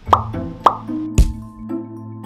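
Three pop sound effects, about half a second apart, over a short music jingle.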